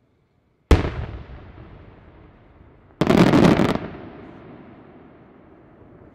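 Aerial firework shells bursting at a display. A single sharp bang comes about a second in and rolls away as a long echoing tail. A second, denser burst lasting most of a second comes about three seconds in and fades into a rumble.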